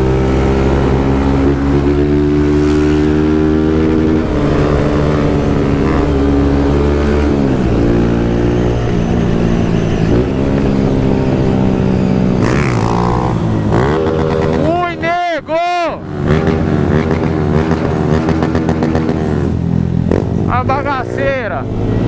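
Honda 160 cc single-cylinder motorcycle engine under way, running steadily at first, then revving up and down through the gears, with two sharp throttle cuts about two-thirds of the way in and another climb in revs near the end.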